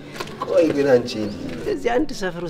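A person's voice rising and falling in pitch without clear words, starting about half a second in.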